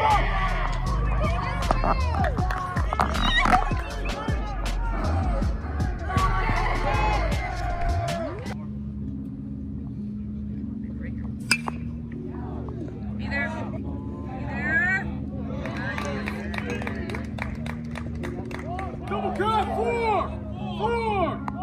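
Background music over baseball game audio: players and spectators shouting and calling, and a single sharp crack of a bat hitting the ball about halfway through.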